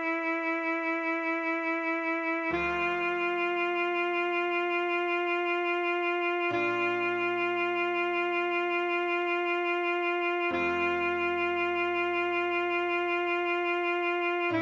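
Alto saxophone playing the closing bars of a melody slowly in long held notes over a backing track. The melody stays on one pitch while the chords beneath it change about every four seconds.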